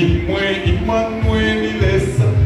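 Church choir singing a gospel carol over a steady low beat, a thump about twice a second.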